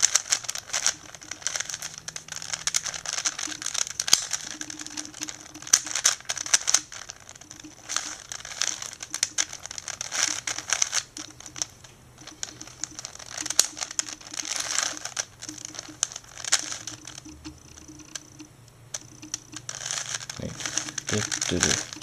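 A 4x4x4 puzzle cube being turned by hand, its plastic layers clicking and scraping in runs of turns with brief pauses, as an edge-parity algorithm is worked through slowly.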